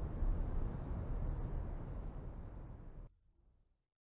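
Crickets chirping, short high chirps about every 0.6 seconds, over a low background rumble. The whole ambience cuts off suddenly about three seconds in.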